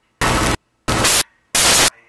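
Loud bursts of static hiss, three of them, each about a third of a second long, evenly spaced with near silence between: a regular on-off noise pattern that drowns out the soundtrack.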